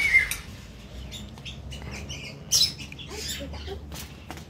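Parrots in an aviary making short squeaky chirps and clicks, with a louder brief squawk about two and a half seconds in, over a steady low hum.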